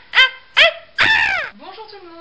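A high-pitched cackling laugh, like a witch's cackle sound effect: short, sharp cries about three a second, ending about a second in with one long cry that falls in pitch and then stops.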